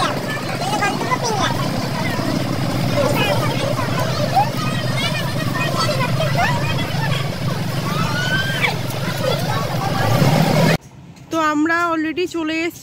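Bus cabin noise: a steady low engine and road rumble with passengers' voices chattering over it. Near the end it cuts off suddenly to a wavering singing voice.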